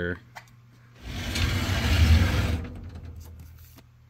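A brief rushing, scraping noise of about a second and a half, loudest in the middle, followed by a few faint clicks.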